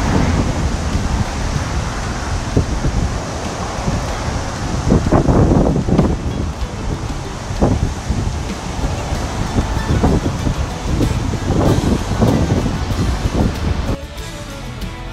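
Wind buffeting the microphone in uneven gusts over the steady rush of surf breaking on a beach.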